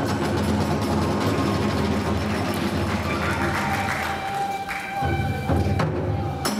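Iwami kagura accompaniment playing: drums with hand cymbals, and a bamboo flute holding tones in the second half. The drums drop out briefly a little before the end.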